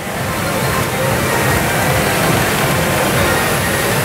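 Steady pachinko-parlour din: electronic music from the machines over a continuous wash of noise.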